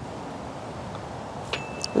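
A short putt: the putter's face clicks against a golf ball about one and a half seconds in, with a brief high ringing note, then a light click as the ball drops into the cup. A steady hiss of background noise runs underneath.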